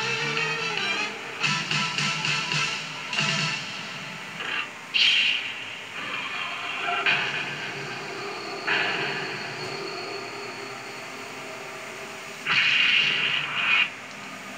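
Soundtrack of a Japanese tokusatsu TV series, picked up from a television's speaker: background music with several noisy bursts of action sound effects. The loudest bursts come about five seconds in and near the end.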